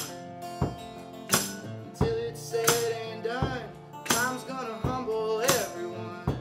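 Acoustic guitar strummed in a steady beat, about three strong strokes every two seconds, with a harmonica in a neck rack playing a sustained melody over it that bends in pitch several times.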